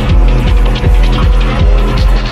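Hard techno playing loud in a DJ mix: a heavy kick drum beating steadily about two and a half times a second over a droning low bass and a busy upper layer.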